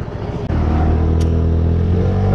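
Motorcycle engine running, growing louder about half a second in and then holding a steady low note as the bike pulls through the intersection.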